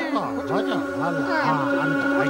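Electronic warbling sound effect: rapid swooping, wavering pitches repeating about three times a second over a steady droning hum.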